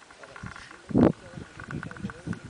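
Strong mountain wind buffeting the camera's microphone in irregular gusts, with one loud blast about a second in.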